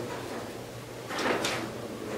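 Quiet room tone with a steady low hum, and one brief soft noise a little after a second in.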